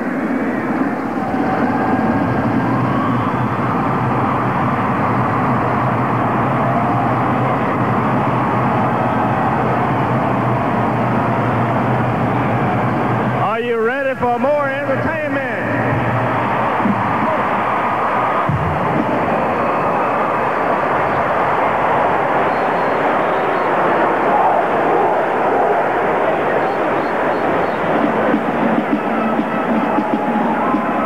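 A large stadium crowd in a domed arena cheering and clamouring, a dense steady roar of many voices. A brief warbling, wavering tone rises over it about fourteen seconds in.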